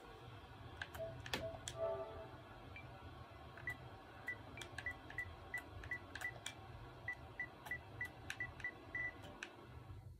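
Short, identical menu-navigation blips, about three a second starting a few seconds in, as a TV or console menu is scrolled with a PlayStation DualShock controller. Light clicks from the controller's buttons run throughout, over a low steady hum.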